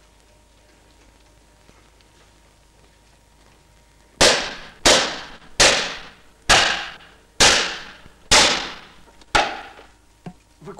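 Pistol fired seven times in quick succession, a little under a second between shots, each bang ringing briefly. The shots begin about four seconds in, after near quiet.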